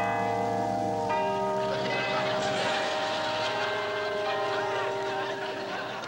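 Bells ringing on after a mallet strike on a carnival high striker: several steady tones sound together and slowly fade, and a second, differently pitched peal comes in about a second later.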